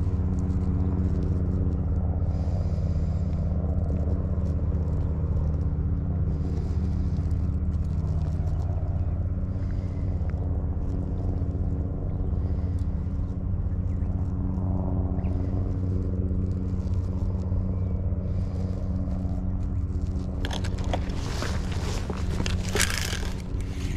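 An engine running steadily: a low, even drone that holds unchanged throughout. Near the end, scraping and rustling handling noise comes in over it.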